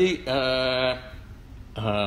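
A man's voice over a video call drawing out a long, level-pitched hesitation sound, then falling quiet for a moment before a second drawn-out one begins near the end.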